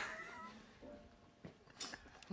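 A man's high, wheezy laugh that slides down in pitch and fades within the first half second. After that it is near quiet, with a faint click about one and a half seconds in.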